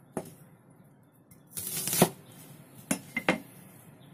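Chinese cleaver chopping an onion on a wooden cutting board: four or five sharp knocks of the blade striking the board, the loudest about halfway through.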